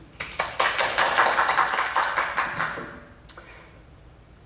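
Several people applauding, a rapid patter of hand claps that starts just after the beginning and dies away about three seconds in, followed by one stray click.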